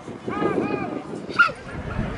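A dog barking twice in quick succession, then a short sharp yelp about one and a half seconds in.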